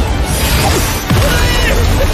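Dramatic soundtrack music mixed with crashing impact effects over a deep rumble, growing louder about a second in.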